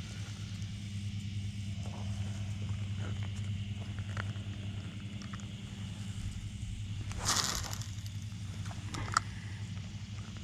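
Spinning rod and reel being fished: small clicks of reel handling, a short rushing noise about seven seconds in and a sharp click near the end, over a steady low hum.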